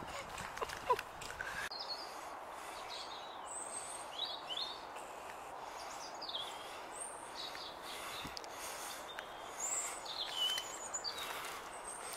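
Small birds calling with short, high chirps scattered throughout, over a steady, even hiss of outdoor background noise.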